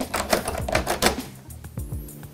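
A rapid, irregular run of small metal clicks and rattles from a doorknob latch being fitted into a door, over background music.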